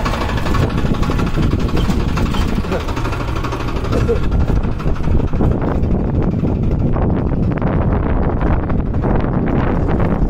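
Tractor engine running steadily under a heavy low rumble, heard from on board while the tractor is moving.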